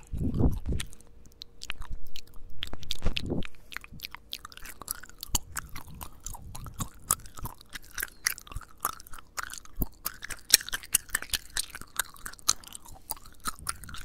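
Gum chewing picked up right at the mouth by a handheld recorder's microphones: a dense run of wet clicks and smacks that grows busier after about four seconds. Low muffled rumbles come near the start and again about three seconds in.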